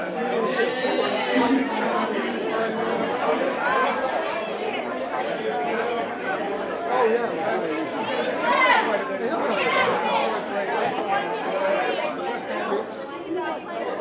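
Crowd chatter: many voices talking at once in a packed room, with no music playing.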